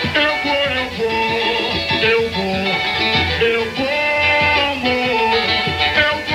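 Samba-school music: a samba-enredo melody with held notes that step up and down, over the steady beat of the drum section (bateria).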